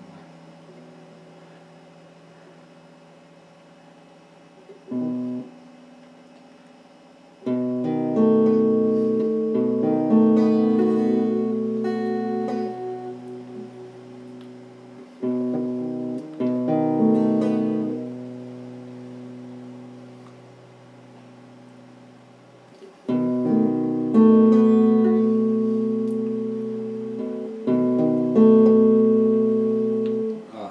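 Electric guitar playing chords, each struck and left to ring out, fading over a few seconds. A short chord comes about five seconds in, a run of chords starts near eight seconds, there is a pause of a few seconds in the middle, and a second run of chords follows.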